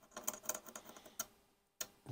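Steel dental pick scraping and picking latex paint out of the slots of brass hinge screws: a run of small, faint ticks and scratches, then one sharper tick near the end.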